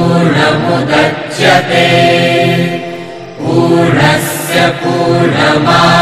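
Voices chanting mantras in long, held phrases, with a short pause about three seconds in.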